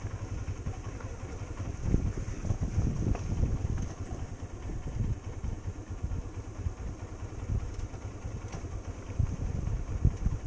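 Motorcycle riding slowly over a rough, wet dirt track, its engine running under a dense, uneven low rumble that shifts in loudness.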